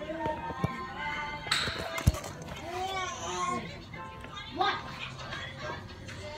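Children's voices talking and calling in the background over music, with a hiss about a second and a half in and a sharp thump just after.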